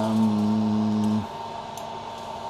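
A man's voice holding one long, steady note, like a drawn-out hum, which stops about a second in.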